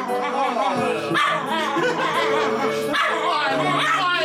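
Small dog howling and yipping along to a country Christmas song playing in the room.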